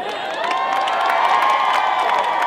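Audience cheering and whooping with scattered clapping, swelling about half a second in.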